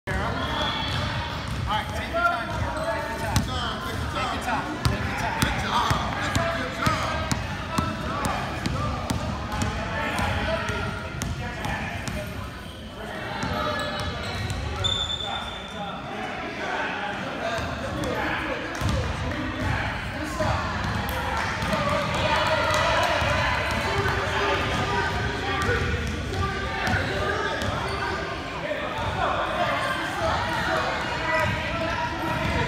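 Basketballs bouncing on a hardwood gym floor, many bounces, thickest in the first several seconds, over continuous chatter of children's and adults' voices.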